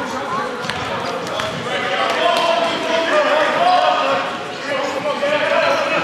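A basketball being dribbled on a hardwood gym floor, heard under the voices of the crowd in the gym.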